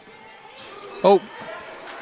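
Basketball game in play in a gym: the ball being dribbled and players' shoes moving on the hardwood court, with a few short high squeaks.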